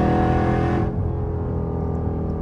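Jeep Grand Cherokee Trackhawk's supercharged 6.2-litre Hemi V8 heard from inside the cabin, running hard at a steady pitch. About a second in, the louder, brighter part of the sound drops away, leaving a lower engine drone with road noise.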